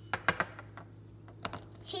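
Sharp clicks and taps of small hard plastic toys being handled on a stone countertop: three quick ones at the start and two more about a second and a half in.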